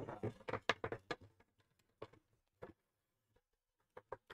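A man's voice trailing off in the first second, then a few faint scattered taps and clicks of hands handling the model ship and its foam packaging, with near silence between them.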